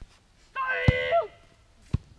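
A child's voice calling out in one sustained, pitched shout lasting under a second. A sharp thud lands in the middle of it, and another short thud comes near the end.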